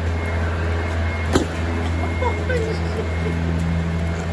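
A steady low machine hum runs throughout, with one sharp knock about a second and a half in.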